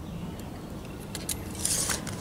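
Light handling noise from measuring tools and an aluminium bar: a few faint clicks, then a short scrape near the end.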